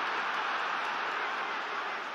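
Arena crowd roaring in a steady wash of noise, reacting to a big landed right hand.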